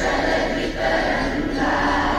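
A large group of students singing together in unison, a sustained sung line at steady loudness.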